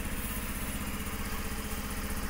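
Honda Super Cub C50's air-cooled horizontal single-cylinder 49cc SOHC engine idling steadily and evenly, with no abnormal noises.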